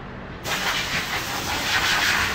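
Compressed air hissing steadily from a workshop air line, starting abruptly about half a second in.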